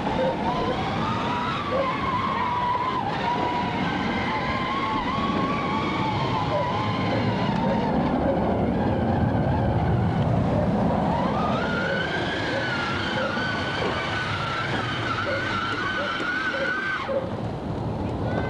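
Electric motor and gearbox of a ride-on toy Jeep whining as it drives through mud. The whine wavers in pitch, rises and holds higher about two-thirds of the way in, then cuts off suddenly near the end.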